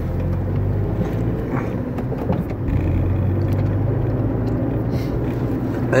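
Steady low rumble of a car driving, heard from inside the cabin: engine and road noise at a constant speed.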